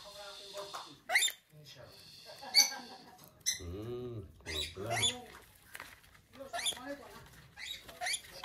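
Rainbow lorikeet giving short, piercing screeches and squeaky chatter while being tickled and rolled on its back in play, about five sharp calls spaced a second or so apart, the loudest near the third second.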